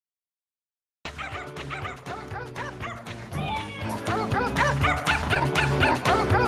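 Music with dogs barking and yipping over it, a quick run of short barks several per second, starting about a second in after silence and growing louder.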